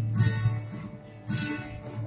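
Acoustic guitar strummed alone in a break between the choir's sung lines: a few chords ringing, over a steady low hum.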